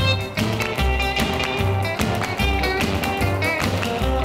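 1957 rock and roll record playing an instrumental stretch: guitar over a bass line that moves in steady beats, with drums.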